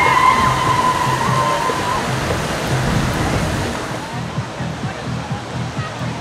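Large park fountain jetting into a pond: a steady, rushing splash of falling water, with crowd voices and music mixed in. A held high tone sounds over it for the first two seconds.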